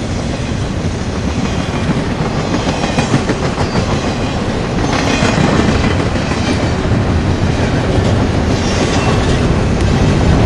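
CSX double-stack intermodal container cars rolling past close by: a loud, steady rumble of steel wheels on rail with scattered clicks and knocks from the wheels, growing a little louder about halfway through.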